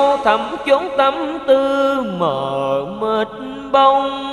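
A man singing in the Vietnamese cải lương style, his voice gliding between long held notes with a wavering vibrato. About two seconds in it slides down to a low note, holds it, then climbs again.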